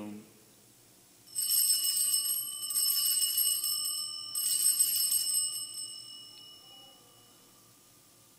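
Cluster of altar (sanctus) bells rung in three shakes about a second and a half apart, a bright jingling with a ringing tone that fades out over the following seconds. The ringing marks the elevation of the consecrated Host.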